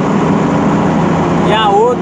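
Truck engine running steadily with road noise, heard from inside the cab while driving; its hum holds an even pitch.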